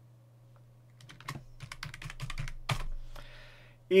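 Computer keyboard typing: a quick, uneven run of about a dozen keystrokes starting about a second in, over a faint steady low hum.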